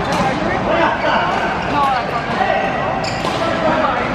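Badminton racket strikes on a shuttlecock in a large, echoing sports hall: a few sharp hits, the clearest about three seconds in, over a steady chatter of voices.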